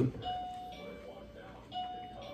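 Doorbell chime sounding a two-note ding-dong, high then low, twice, about a second and a half apart.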